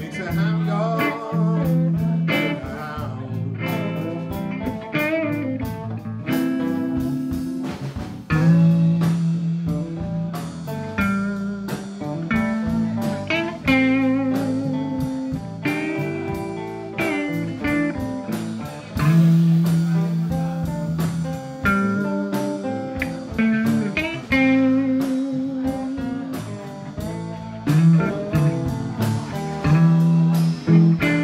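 Live blues band playing an instrumental passage: an electric guitar plays lead with bent, wavering notes over bass guitar, drums and an acoustic guitar.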